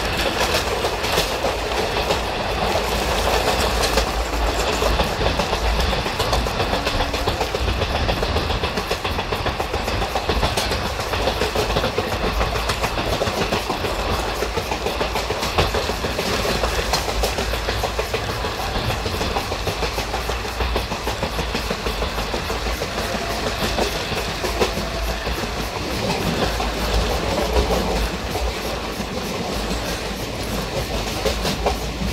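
Passenger train coach running along the track, heard from on board: a steady rumble of wheels on rails with a fast clickety-clack clatter throughout.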